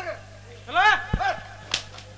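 A man's loud amplified shout through a stage sound system, followed by a brief low thump and then a single sharp crack near the end.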